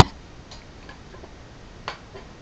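Faint room noise with two light clicks, a faint one about half a second in and a sharper one just before the end.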